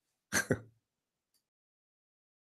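A man's voice finishes a word with a short chuckle, then the sound cuts out to dead silence.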